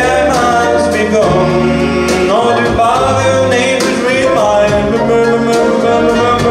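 A male vocalist singing live with a small band and orchestra, accordion and violin among the instruments, with short cymbal-like percussion strikes a few times a second.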